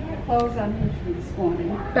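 A woman's voice hesitating mid-sentence with a few short, pitched filler sounds, then picking up her sentence near the end.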